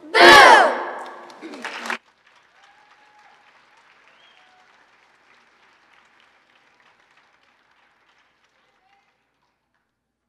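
Children's choir letting out a loud scream with its pitch sweeping up and down for about two seconds, the scripted ending of a Halloween song. It cuts off abruptly, leaving only faint applause.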